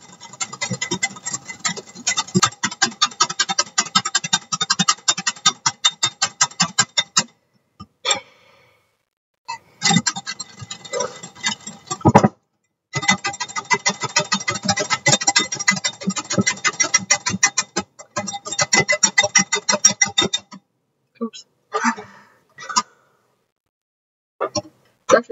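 Wire whisk beating heavy cream by hand in a glass bowl: a fast, steady clatter of the wires against the glass, in several runs with short pauses, ending a few seconds before the end. The cream is thickening toward whipped.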